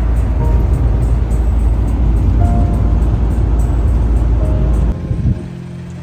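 Minivan driving on a highway, heard from inside the cabin: a loud, steady low rumble of engine and road noise. It cuts off suddenly about five seconds in, and background music takes over.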